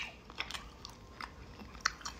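A person chewing a tough, sticky gummy candy with the mouth close to the microphone: a sharp wet click at the start, then a few faint short clicks and smacks.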